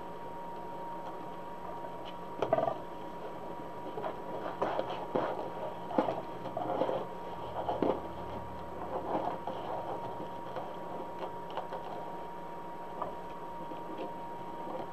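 Mesh ribbon rustling and crinkling in the hands as it is unrolled, folded and gathered into a ruffle, in irregular bursts with a few light taps, over a faint steady high tone.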